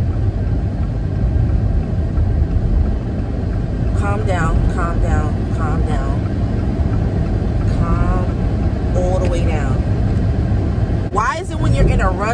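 Steady low rumble of a car being driven, heard inside the cabin, with a woman's voice coming in short bits from about four seconds in and again near the end.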